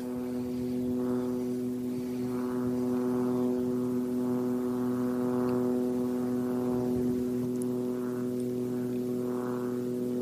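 A steady mechanical drone that holds several constant pitches without rising or falling, like a distant engine running.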